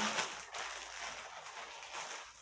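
Plastic bag of marshmallows crinkling continuously as it is handled and pulled open.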